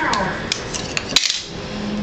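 Small plastic clicks and snaps as the back cover of a CECT i32 phone is pried off the handset, with the sharpest click a little past halfway.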